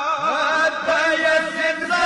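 Men's voices chanting a Pashto noha (mourning lament) together, the drawn-out notes wavering and bending in pitch.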